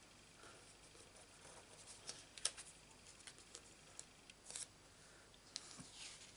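Faint, scattered light clicks and soft rustles of paper and stamping tools being handled on a craft mat.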